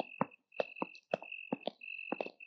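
Night chorus: crickets trilling on one steady high note, with frequent short frog croaks, several a second.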